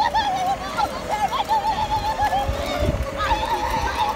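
A high-pitched voice rising and falling in a string of quick swoops, over a steady hum.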